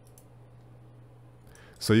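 A couple of faint computer mouse clicks shortly after the start, over a faint steady low hum. A man begins speaking near the end.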